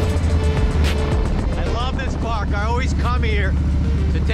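A Harley-Davidson Low Rider ST's V-twin running steadily at riding speed, with wind rumble, under background music. A voice comes in about halfway through.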